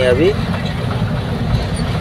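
Steady low drone of a moving truck's engine and road noise, heard inside the cab while driving.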